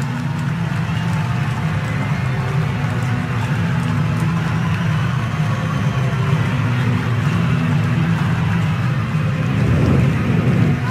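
Stadium crowd cheering and applauding a goal, a steady roar of noise without any single standout sound.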